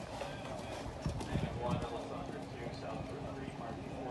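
Hoofbeats of a warmblood mare cantering on sand arena footing, most distinct in the first two seconds as she passes close by, over background voices. A steady low hum comes in about halfway.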